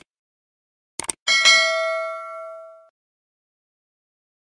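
Subscribe-button sound effect: a quick double mouse click about a second in, then a bright bell ding that rings out and fades over about a second and a half, the notification-bell chime.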